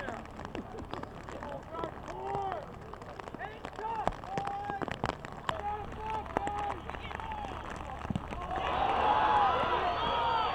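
Football game crowd: scattered single shouts and calls with occasional sharp knocks, then many voices rise together into louder crowd cheering near the end as a play runs.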